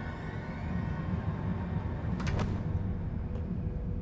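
Low, steady machine rumble of a starship hangar's background sound, with a short hiss about two seconds in. Faint orchestral score fades out near the start.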